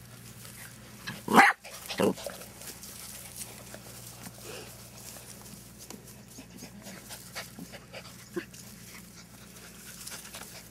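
Dachshund puppies playing: two short, loud yelps about one and two seconds in, then only faint scuffling.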